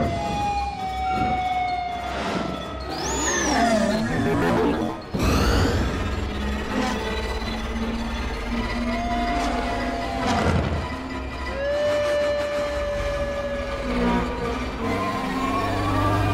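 Orchestral film score mixed with the whine of sci-fi airspeeders flying past, several tones sliding down in pitch as craft go by, and rushing whooshes about five and ten seconds in.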